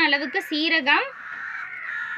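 A woman speaking briefly, then about halfway through a drawn-out, harsh, even-pitched call takes over until the end.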